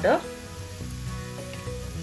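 Chopped onion, capsicum and carrot sizzling steadily in oil in a kadai over medium flame, with soft background music.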